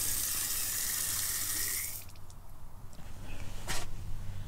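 Water hissing out of a barely opened ball valve on a gauge test rig under mains pressure of just over 600 kPa, a steady high hiss that cuts off abruptly about two seconds in. A short click follows near the end.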